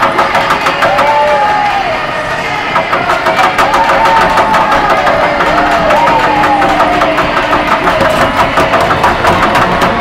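Rapid knocking and banging on the plexiglass rink boards as players skate past, amid arena crowd noise, with a pitched tone that slides up and down again every second or two, likely music over the arena speakers.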